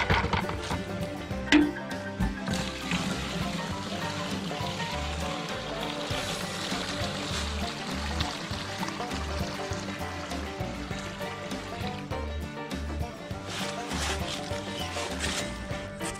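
Background music with a steady bass beat, and through the middle a steady stream of old gasoline pouring from a fuel tank's pump opening into a plastic bucket.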